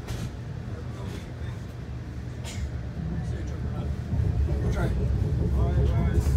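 Low, steady rumble of a moving passenger train heard from inside the coach, its wheels running on the rails, with a few sharp clicks; the rumble grows louder about halfway through.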